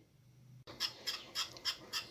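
Wire whisk stirring a hot, thickening milk and cornstarch mixture in a saucepan, a quick run of scraping strokes against the pan starting a little over half a second in.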